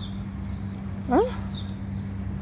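A short, rising "huh?" from a person about a second in, over a steady low hum.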